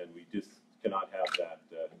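A man's voice speaking in short broken phrases into a lectern microphone: speech only.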